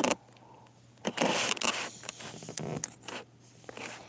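Handling noise from a handheld phone: a short knock at the start, then about a second in a scraping rustle lasting under a second, followed by scattered faint clicks and rubbing as the phone is moved.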